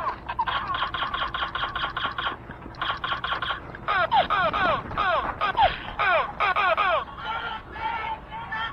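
Electronic laser tag guns firing. First comes a rapid run of even pulses, about eight a second. Then come bursts of falling-pitch zaps, three or four to a burst, fired over and over.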